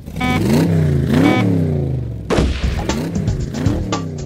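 A short electronic start beep, then a racing-car engine sound effect revving up and down in several sweeps, followed by a run of sharp clicks and knocks.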